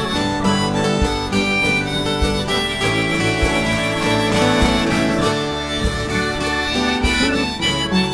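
Instrumental passage of an acoustic folk ballad: a harmonica plays the melody in held notes over strummed acoustic guitar.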